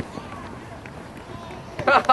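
Open-air ambience of a youth soccer game: faint distant voices of players and spectators calling across the field, then a man's loud shout near the end.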